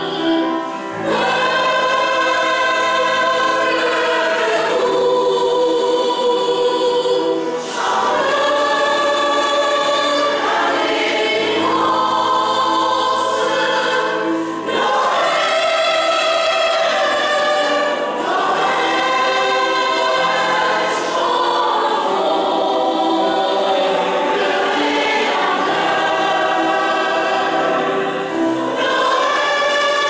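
Mixed choir of men's and women's voices singing a Christmas carol, held notes in phrases of a few seconds with short breaks between them.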